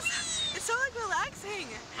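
Two women squealing and laughing with excitement as they are flung on a slingshot thrill ride: several short, high-pitched rising-and-falling cries.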